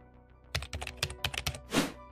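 Computer keyboard typing sound effect: a quick run of about a dozen keystrokes starting about half a second in and lasting about a second, ending in a short whoosh. Soft background music plays underneath.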